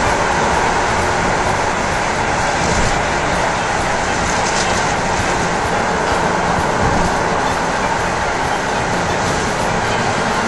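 Steady road and tyre noise of a car driving through a road tunnel, heard loud from inside the cabin.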